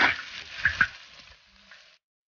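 Metal spatula scraping across a large wok as stir-fried chicken pieces are scooped onto a plate, with a light sizzle and two short clinks just under a second in; the sound fades out about two-thirds of the way through.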